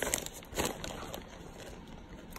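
Plastic bag of shredded sharp cheddar cheese crinkling faintly as it is handled, mostly in the first half second.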